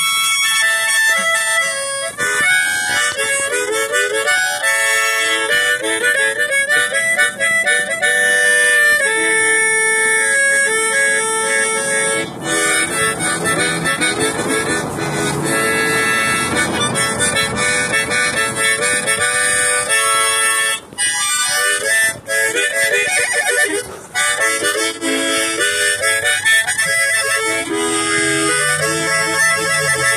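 Harmonica played, a melody of stepping single notes and chords with audible breath between them.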